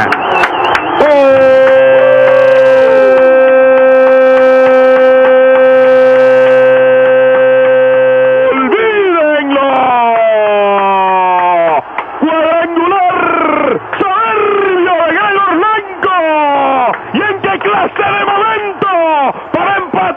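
Radio play-by-play announcer's home-run cry: one long shout held on a single steady pitch for about seven seconds, then sliding down and breaking into excited, rapid commentary. The narrow, thin AM-radio sound has nothing above the midrange.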